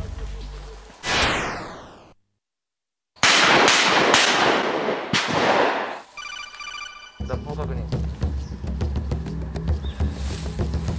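A whoosh effect, a second of dead silence, then four loud shotgun blasts echoing within about two seconds. A short electronic chime follows, and background music comes in.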